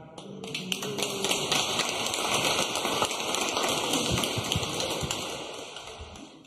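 Congregation applauding: a dense patter of many hands clapping that starts about a third of a second in and fades away near the end.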